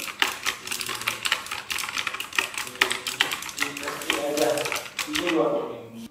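Mazer E-Blue K727 mechanical keyboard with blue clicky switches being typed on fast, a dense run of sharp key clicks that stops about five seconds in.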